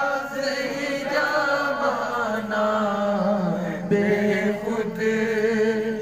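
A man chanting a devotional zikr into a handheld microphone, in long drawn-out sung notes that bend slowly in pitch.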